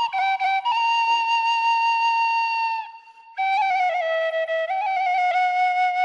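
Serbian frula (wooden shepherd's flute) played solo. A long held note breaks for a short breath about three seconds in, then a phrase of quick ornamented notes settles into another long held note.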